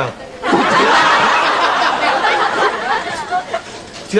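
Audience laughing loudly in a burst that begins about half a second in and slowly dies away toward the end.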